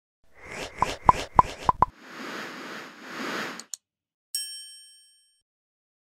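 Logo intro sound effect: five quick pops, then a whoosh that swells twice, then a single bright bell-like ding that rings out and fades.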